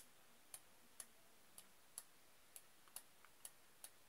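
Faint sharp clicks, about two a second at slightly uneven spacing, over near silence.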